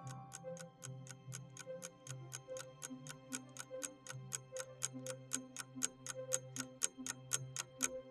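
A clock-tick countdown sound effect, ticking evenly at about four ticks a second over soft, low background music.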